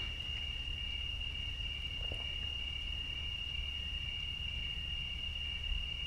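Crickets trilling steadily at one high pitch, over a low steady background rumble.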